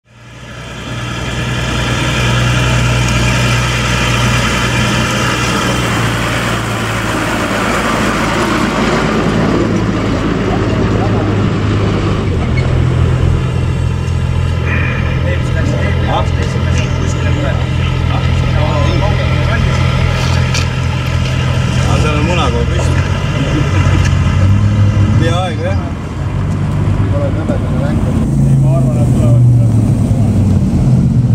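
A vehicle engine idling with a steady low hum that shifts pitch about twelve seconds in and again near the end, with people talking in the background.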